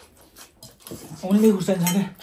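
Metal forks clink and scrape on ceramic plates as spicy noodles are eaten. Just over a second in, someone lets out a long pained moan, a reaction to the burn of the extra-spicy noodles.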